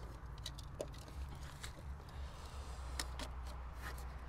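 Faint, scattered clicks and light rattles of plastic wiring-harness connectors being handled and pushed onto the DME, over a low steady rumble.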